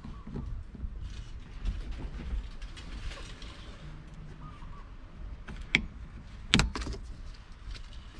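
Flat-tip screwdriver prying a plastic trim cover off a seatbelt's upper anchor: faint scraping, then two sharp plastic clicks about a second apart past the middle as the cover comes free.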